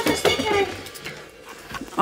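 Bottles and food containers knocking and clinking as they are set into a small fridge, a few short clinks in the first second.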